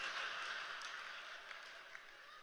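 Faint audience laughter and scattered clapping that die away slowly.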